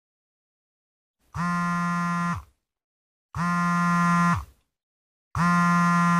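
Mobile phone buzzing with an incoming call: three buzzes of about a second each, two seconds apart, each sliding up in pitch as it starts and sagging as it stops.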